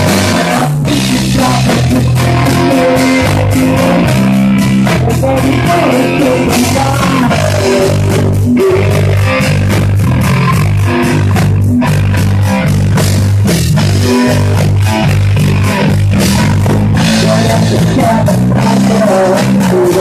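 Live rock band playing loud: electric guitars and a heavy low line over a steady drum kit beat.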